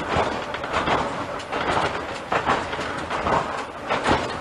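Kambara Railway Moha 41 electric railcar running along the line, heard from inside at the front of the car: a steady running rumble with the wheels clacking over the rail joints roughly once a second.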